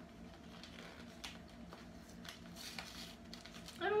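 A taped paper envelope being worked open by hand: faint paper rustling with a few small clicks and a brief crinkle.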